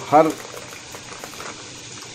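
Chicken and pumpkin pieces frying in a pan, a low, steady sizzle with faint crackles.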